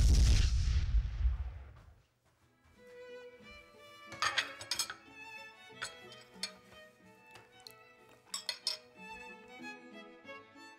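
An explosion sound effect: a loud bang with a deep rumble that dies away over about two seconds. After a short gap, gentle violin music follows.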